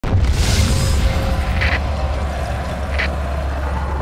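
A loud, deep, steady low rumble that starts abruptly, with two short hiss-like bursts about one and a half and three seconds in.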